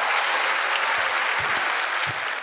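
Audience applauding, a steady dense clapping.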